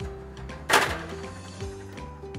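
Metal baking tray slid onto an Electrolux oven's wire rack, with one sharp knock about three-quarters of a second in, over steady background music.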